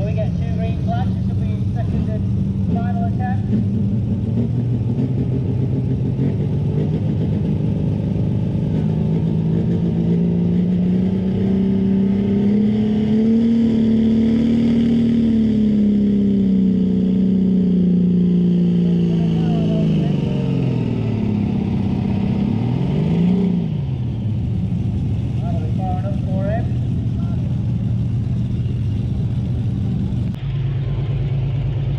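Prostock pulling tractor's diesel engine under full load on the sled. The engine speed climbs, holds, then drops away over several seconds. There is a short rev about three quarters of the way in, and the engine then runs lower and steady.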